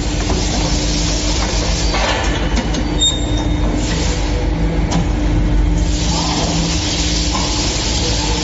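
Hydraulic silicone-rubber molding press running, with a steady low hum and rumble and swells of hissing, while the glove mold tray slides in and the press closes on it. There is a sharp knock about five seconds in.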